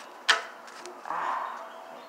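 One sharp knock of a hand handling the phone close to the microphone, followed about a second in by a brief murmured vocal sound.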